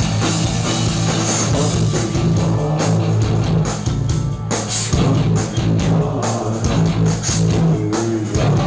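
A rock band playing live and loud, with a steady bass line under guitar and drums with repeated cymbal hits.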